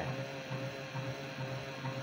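12-volt DC motor driving a gearbox at low speed, giving a steady hum with a single held note above it. It turns slowly because it is fed from a 12 V battery rather than the 24 V it is meant to run on.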